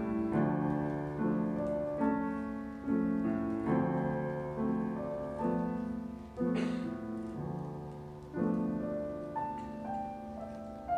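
Grand piano played solo at a slow, even pace, a new chord a little more often than once a second, with a melody line on top. A short noise cuts across the music about six and a half seconds in.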